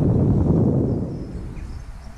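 Gusty wind buffeting the microphone: a loud, rough, low rumble that eases off after about a second. Faint bird chirps can be heard behind it.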